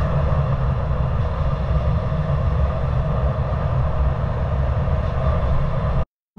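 Suzuki GSX-R125 motorcycle ridden at a steady speed, heard from on the bike: a steady low engine drone mixed with road and wind rumble, cutting off abruptly at the end.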